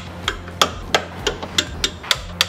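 Ratchet wrench clicking as bolts are tightened down, in sharp, evenly spaced clicks about three a second.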